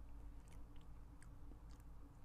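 Faint chewing of a soft, layered durian crêpe cake, with a few small wet mouth clicks over a low steady room hum.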